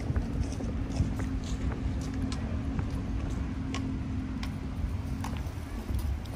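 Footsteps on a paved park path over a low city rumble, with a steady low hum that stops about five seconds in.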